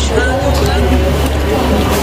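A steady low rumble under faint background voices.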